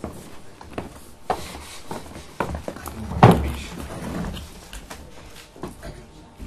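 Scattered footsteps, knocks and prop handling on a wooden stage, with a short voiced sound about three seconds in.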